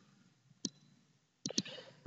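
Three faint clicks of a stylus tapping on a pen tablet as a word is handwritten: one about a third of the way in, then two close together near the end.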